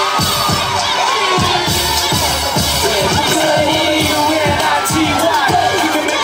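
Dance music with a steady heavy beat played loud over a PA, while an audience cheers and children shout over it.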